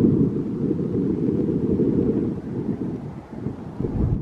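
Wind buffeting the camera's microphone: a loud, gusting low rumble that eases briefly about three seconds in.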